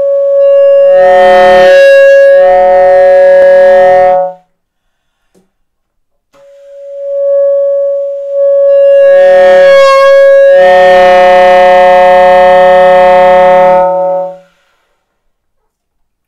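Solo alto saxophone playing two long, loud held notes, foghorn-like, with a pause of about two seconds between them. Each note thickens into a rough, chord-like sound with lower tones underneath before cutting off.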